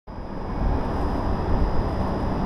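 Low, uneven outdoor rumble on the camera microphone: wind with a distant city hum, carrying a thin steady high tone.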